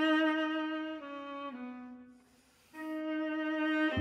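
Solo viola bowing slow, held notes: a long note, then two steps down, a short break just past halfway, then another long note.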